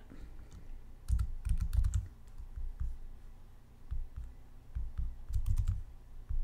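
Computer keyboard keys being pressed in two short bursts of clicks, about a second in and again near the end, each with low thumps under the keystrokes.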